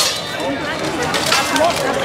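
Indistinct voices of people talking, with one brief sharp knock right at the start.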